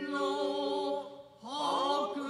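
Noh chorus chanting Kanze-school utai in unison for a shimai dance, in long sustained notes. The voices break off for a breath a little past a second in, then come back in with a rising slide into the next phrase.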